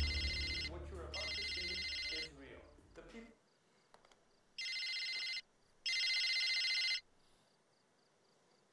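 Mobile phone ringtone: an electronic ring in four separate bursts, two early and two later, each under a second long. Low music fades out during the first three seconds.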